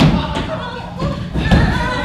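Thuds and footfalls of people moving fast on a stage floor and pushing against the set walls. A few held pitched tones, like music or a voice, come in during the second half.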